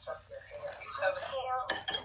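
Voices talking over an open phone call, heard faintly through the phone's speaker, with two sharp clicks near the end.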